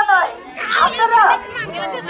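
Speech amid crowd chatter: a voice talking over the murmur of a crowd.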